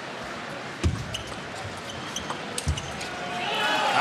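Table tennis rally: sharp clicks of the celluloid ball off rackets and table, with two heavier thuds about one and three seconds in. Crowd noise swells near the end as the point finishes.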